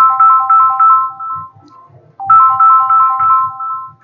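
A short electronic ringtone-style melody of clean beeping notes, played twice with a brief gap between, over a soft low beat.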